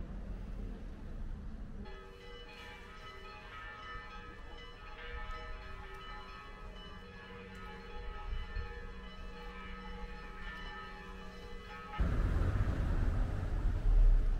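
Church bells ringing, their overlapping tones sustained and pealing for about ten seconds. Near the end a sudden loud rushing rumble cuts in.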